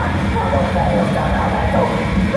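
Heavy metal band playing live at full volume, the distorted guitars and drums heard as a dense, blurred roar with shouted vocals on top.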